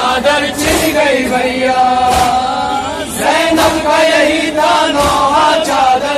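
Male voice chanting a noha, an Urdu lament, in long held melodic lines, over a regular beat about every second and a half.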